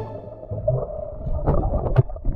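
Muffled underwater sound of sea water around a snorkeler's camera: a low rumble and sloshing, with several sharp splashes in the second half.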